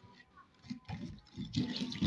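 Spoon stirring yogurt and sugar in a terracotta bowl: wet, sloshing strokes repeating a few times a second, quieter at first and louder near the end.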